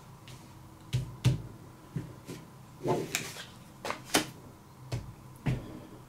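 Playing cards being flipped face up and laid down on a felt table: a scattered series of about nine short, sharp snaps and clicks.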